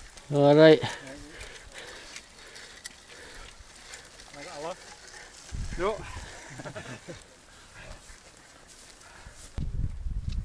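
Short vocal calls with a wavering pitch: a loud one just after the start and two fainter ones in the middle, over a low rustle of movement on the track.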